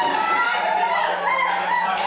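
A voice wailing with a wavering, sliding pitch, over a steady low hum.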